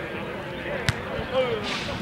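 One sharp thump of a football being struck, about a second in, amid players' voices calling on the pitch.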